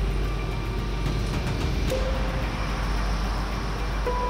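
Road traffic on a city street, cars driving past in a steady rush of noise, with soft background music underneath.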